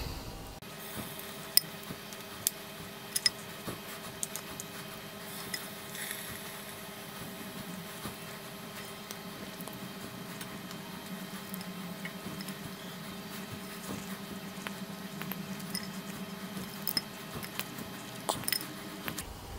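Faint, soft squelches and a few light clicks as pieces of wet, yogurt-marinated chicken are set by hand onto an air fryer's metal wire grill, over a steady low hum.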